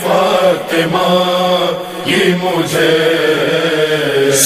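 A voice singing a devotional Urdu manqabat in praise of Fatima Zahra, drawing out long, wavering notes.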